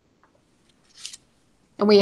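A quiet room pause with one brief soft hiss about a second in, then a woman begins speaking near the end.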